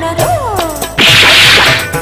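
Film-trailer sound effect over the music: falling gliding tones, then about a second in a loud, noisy whoosh lasting nearly a second.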